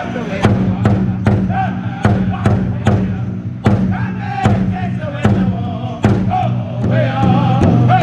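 Powwow drum group singing together in high voices around a large hide drum, the drummers striking it in unison in a steady beat of about two to three strokes a second.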